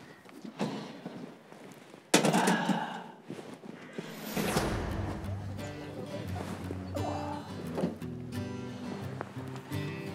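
A short clatter as a ceramic pie dish goes onto the wire rack of a portable gas camping oven, followed by a falling whoosh sound effect and background music with steady held notes.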